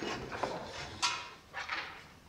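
A few brief, scattered noises in a reverberant concert hall while the band settles before a piece, the loudest a sharp sound about a second in, followed by another shortly after; no music is playing.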